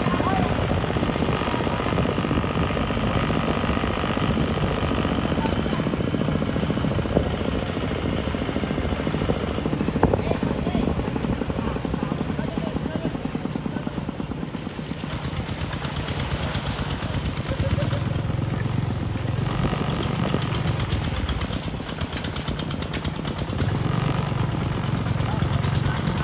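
Single-cylinder engine of a Cambodian walking tractor (kou yun) running steadily with a rapid, even thudding as it pulls a trailer over a rough dirt track.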